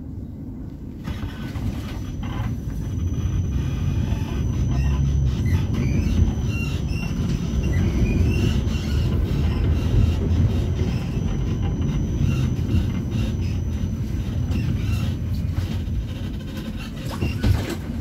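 Tram heard from inside the passenger cabin: it picks up speed about a second in and runs along street track with a steady low rumble. A thin high whine is held for much of the ride, and wheels squeal briefly in the middle. There is a single thump near the end.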